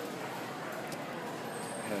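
Steady murmur of a busy indoor exhibition hall: a haze of distant, indistinct voices with no single sound standing out.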